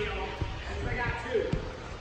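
Two dull thuds about a second apart, feet landing on padded parkour obstacles, with people's voices in the background.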